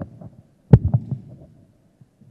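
Handling noise on a handheld microphone: one sharp knock about three quarters of a second in, then a few softer low thuds.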